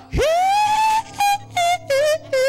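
A man singing loudly into a handheld microphone in gospel style. He swoops up into a long high note, then sings short notes that step down lower one after another.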